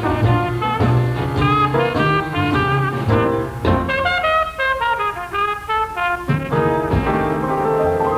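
Small Dixieland-style jazz band playing an up-tempo number: trumpets, trombone, clarinet and saxophone leading over piano and upright bass, with a strong accented hit about seven seconds in.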